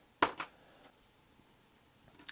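A sharp metallic clink about a quarter second in, with a softer one just after it, as the bare metal chassis of a small die-cast toy car is handled.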